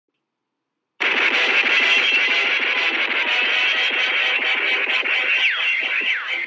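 A film-company logo's music and sound effects playing from a television's speakers, picked up in the room. The sound starts abruptly about a second in, and falling, whistle-like glides come in near the end.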